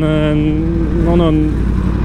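A man's voice held in a drawn-out hesitation sound for about a second and a half, over the steady low rumble of a 2018 Yamaha R1 motorcycle being ridden in traffic.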